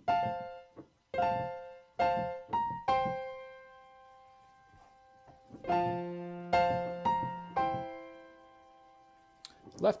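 Piano playing an F major chord (C F A) in the right hand, struck four times in a syncopated rhythm and left to ring. After a pause, the pattern repeats with a low F octave added in the left hand.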